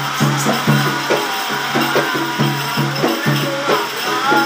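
Sri Lankan double-headed ritual drum beaten by hand in a fast, steady rhythm of resonant low strokes, with a light jingling over it.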